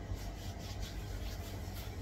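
Faint rubbing of a palm over a shaved, bald scalp, skin sliding on skin.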